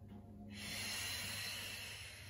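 A woman's long, audible breath out through the mouth, a soft hiss that starts about half a second in and fades near the end, as she twists and reaches forward in the Pilates saw exercise.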